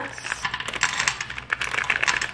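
Crushed peanuts poured into a dry nonstick frying pan: a rapid scatter of small ticks and clicks as the pieces land on the pan.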